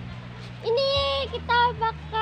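A child's high voice holds one long steady note starting about two-thirds of a second in, then gives a few shorter notes.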